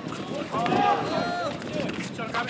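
Several players' voices calling out at once for about a second during an outdoor basketball game, with running footsteps and the knocks of sneakers and ball on the hard court around them.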